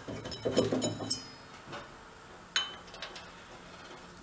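Metal clinks from a snowblower's auger drive pulley being worked onto its shaft by hand: a ringing clink about a second in and a sharper clink about two and a half seconds in.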